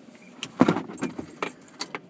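A rustle about half a second in, then several sharp, irregular clicks and rattles, over the low steady noise of a car cabin.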